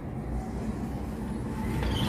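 Low, steady rumble of city traffic, muffled through a closed glass sliding door.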